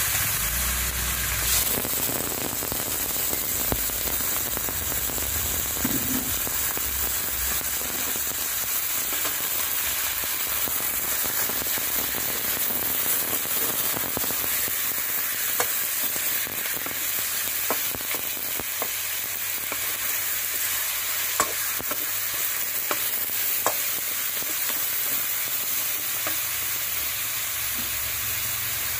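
Chicken wings searing in hot oil in a wok: a steady frying sizzle with scattered small pops and crackles.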